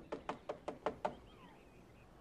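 Knocking on a door: a quick run of about seven knocks within the first second.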